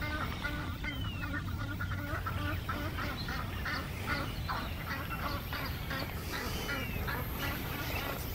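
Black swans with their cygnets calling: a steady run of short, soft calls in quick succession, with a brief curved whistle twice, about a second in and near the end.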